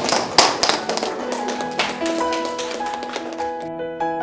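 Scattered handclaps from a small group, thinning out over the first three seconds, while slow piano music comes in about a second in.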